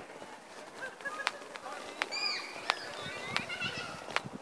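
Outdoor birds calling, with short curved whistled and honk-like calls coming and going. There are also a few sharp clicks, about four in all.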